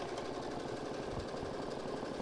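Embroidery machine stitching steadily at about ten stitches a second, sewing a tack-down line through fusible fleece in the hoop.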